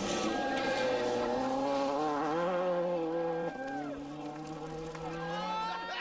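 Ford Focus RS WRC rally car at full throttle on gravel, its engine note climbing and falling through the gears. The note drops sharply about three and a half seconds in, then runs on at a lower steady pitch.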